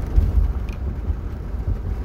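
Road and engine noise inside the cabin of a moving car: a steady low rumble.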